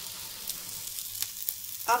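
Garlic-chilli paste and spices frying in about a teaspoon of hot oil in a metal kadhai: a steady sizzle with a few sharp crackles.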